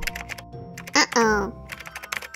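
A flurry of rapid sharp clicks, then a brief cry that falls in pitch about a second in, followed by more scattered clicks.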